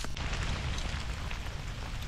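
Steady rain falling on the leaf litter of a woodland floor, with a few faint drop ticks.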